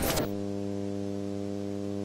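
Street noise cut off abruptly about a quarter second in, giving way to a steady, unwavering low hum with a ladder of even overtones.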